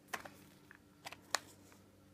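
A few light clicks and taps as a plastic tube full of silver Britannia coins is handled and lifted out of its box: one just after the start, two close together about a second in, then a sharper click.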